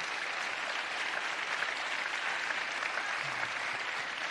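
Audience applauding steadily after a speaker's closing line.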